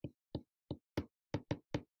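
A marker being drawn on a small handheld whiteboard: a quick run of about seven short taps as the strokes are made.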